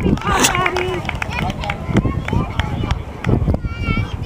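Voices calling out across an outdoor soccer field, over a steady low rumble.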